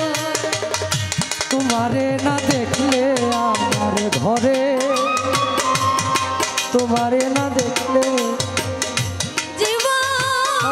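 Live Bengali Baul folk music: rapid hand-drum strokes under a sustained, wavering melody line.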